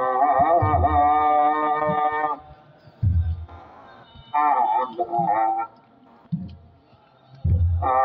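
Ethiopian Orthodox clergy chanting in unison: long, wavering melismatic phrases separated by pauses. The phrases come over slow, deep strokes of a kebero drum.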